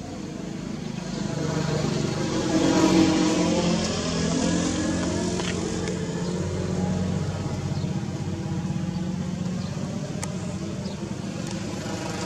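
A motor vehicle's engine passing close by, growing loudest about three seconds in, followed by an engine running steadily.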